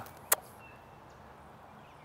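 A single short lip-smack kiss, a chef's kiss blown from the fingertips, about a third of a second in, followed by faint outdoor background hiss.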